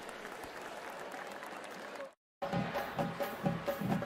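Stadium crowd noise, an even hum of a large crowd, broken by a brief total dropout just after two seconds. Then music comes in over the crowd.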